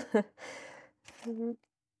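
A woman's voice: the tail of a spoken word, a soft breathy exhale, then a short hummed 'hm', followed by silence.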